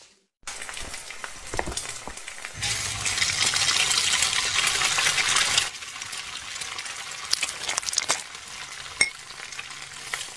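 Hot oil sizzling and crackling, as in deep-frying, with a dense hiss that swells louder from about two and a half to five and a half seconds in, then settles to a lighter crackle with scattered sharp pops.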